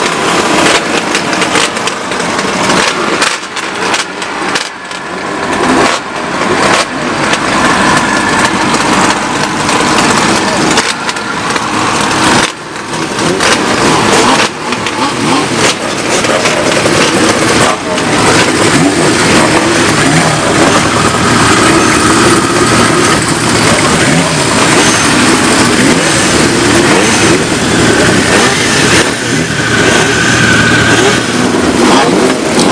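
Several classic motorcycles running at once with loud exhaust, their engines idling and being blipped and revved, with crowd talk mixed in.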